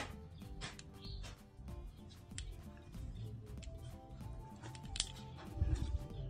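Background music with held notes and scattered sharp ticks, with a low thump near the end.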